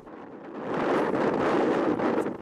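Wind rushing over the microphone, a steady noise that swells about half a second in.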